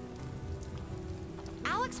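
Steady rain sound effect on an animated show's soundtrack, with soft sustained music tones underneath. A voice starts shortly before the end.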